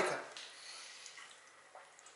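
Faint liquid sounds of a man drinking from a plastic shaker bottle, after the last words of his speech trail off at the start.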